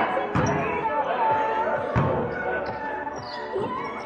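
A volleyball being struck twice during a rally, two sharp smacks about a second and a half apart, echoing in a large gym hall.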